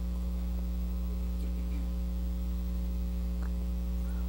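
Steady electrical mains hum, a low buzz with several even overtones and no change in level, with a faint click about three and a half seconds in.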